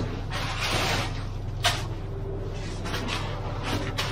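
A ready-mix concrete truck runs steadily while wet concrete comes down its chute. There is a single sharp knock about one and a half seconds in.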